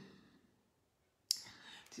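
A single sharp click a little over a second in, followed by faint handling noise, as plastic lip pencils are handled.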